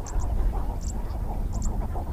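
A dense chorus of many birds calling at once, with scattered short high chirps, over a steady low rumble.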